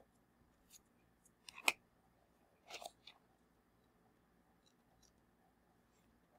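Faint handling of an oracle-deck guidebook, its pages being turned while looking up a card entry: a few short papery rustles in the first three seconds, the loudest about one and a half seconds in, then only faint ticks.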